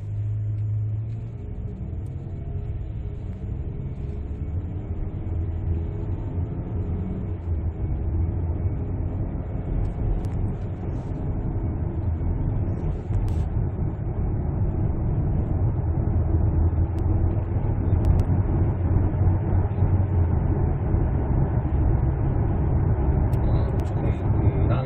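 Ford Explorer 2.3-litre turbocharged four-cylinder petrol engine and road noise heard from inside the cabin while driving, growing gradually louder as the car picks up speed.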